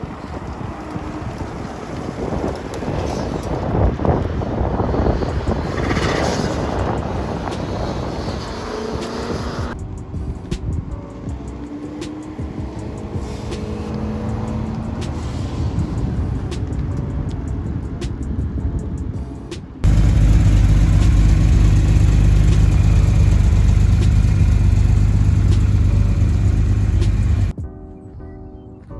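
Car engines accelerating hard on a track in a series of short cuts, the pitch rising as they pull away. In the last several seconds there is a loud, steady low rumble that cuts off suddenly.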